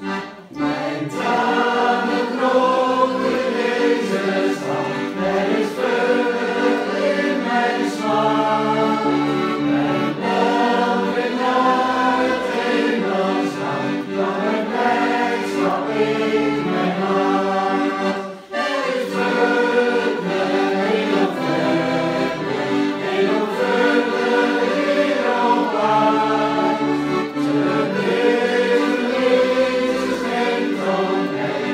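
A small group singing a Christian hymn together, accompanied by a button accordion. The singing starts about a second in, after the accordion intro, and breaks briefly for a breath between lines about two-thirds of the way through.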